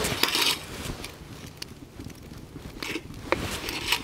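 A frying pan set down on a metal wire grill grate over a wood campfire: a short clatter near the start, followed by scattered crackles and small clicks from the fire.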